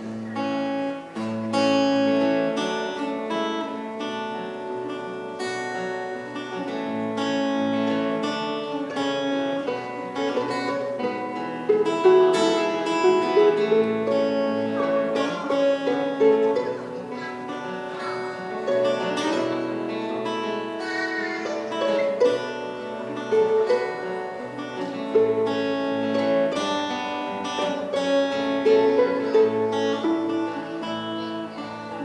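A steel-string acoustic guitar plays the instrumental introduction of a folk song, with steady rhythmic picking and no singing.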